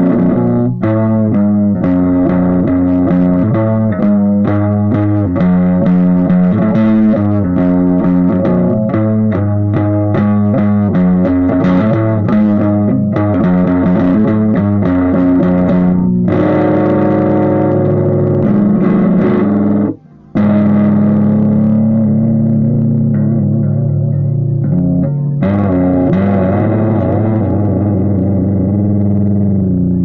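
Stratocaster electric guitar being played: a busy stream of picked notes and chords, with a brief break about twenty seconds in.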